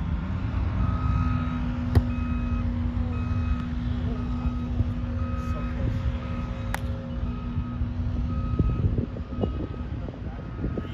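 A vehicle's reversing alarm beeping steadily, about one beep every three-quarters of a second, over a low engine rumble and wind on the microphone. Two sharp smacks, about two seconds and seven seconds in, fit a volleyball being struck.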